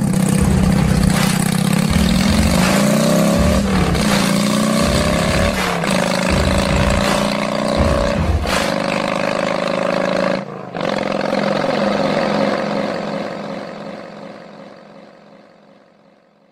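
Engines revving, their pitch rising and falling in several runs, with a brief break about ten seconds in; the sound then fades out over the last few seconds.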